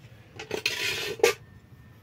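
Dishes and cutlery clattering: a short scrape across a plate, closed by a sharp clink.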